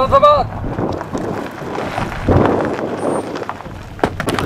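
A man's drawn-out shouted drill command, ending just after the start, then wind buffeting the microphone in an open field.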